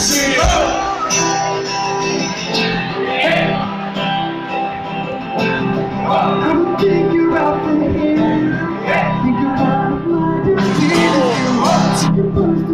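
A live folk-pop band playing: strummed acoustic guitar, mandolin and electric guitar over a steady beat, with some singing.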